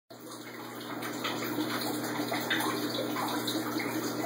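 Steady rush of running, splashing water in an aquarium, over a low steady hum.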